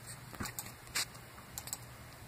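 A few faint, sharp clicks, about half a second apart, over a steady low hum.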